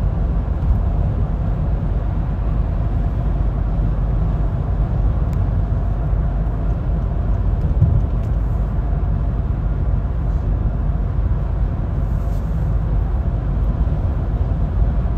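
Steady low rumble of road and engine noise inside a car cruising at freeway speed.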